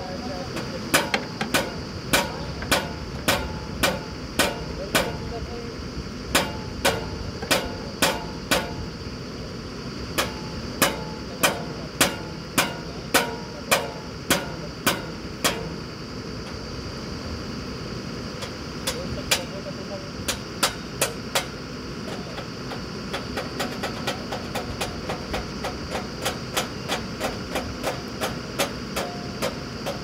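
Repeated sharp metallic strikes, about two a second in runs, over the steady running of a truck-mounted borewell drilling rig's engine and air compressor. The strikes stop for a few seconds around the middle, then come back lighter and quicker near the end.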